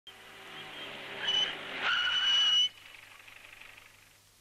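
A car running and drawing closer, then stopping with a loud high squeal: a short squeal about a second and a half in and a longer one just under a second later, which cuts off suddenly.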